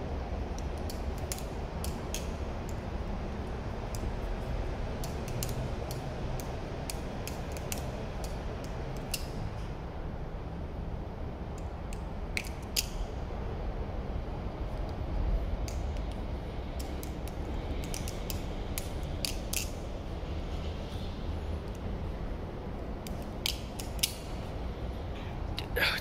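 Balisong (butterfly knife) being flipped by hand: irregular runs of sharp metallic clicks and clacks as the handles swing and knock together, over a steady low rumble.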